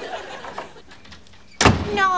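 Studio audience laughter fading out into a quiet stretch, then a single loud, sharp bang about one and a half seconds in.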